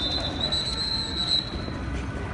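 A shrill, steady high-pitched tone sounds over street and crowd noise. It falters briefly about half a second in, then holds and cuts off near the end.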